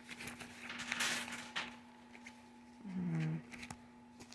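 Coins being handled: a clinking, rattling burst about a second in and a few light clicks. A short hummed voice sounds around three seconds in, over a steady low hum.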